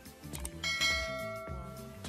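A bell chime sound effect, the notification-bell sound of an animated subscribe button, rings out about half a second in and fades away over the next second. Background music with a steady beat plays under it.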